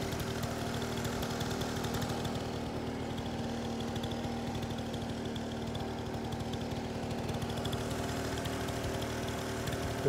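Small 49cc scooter engine idling steadily, an even low running note with no revving.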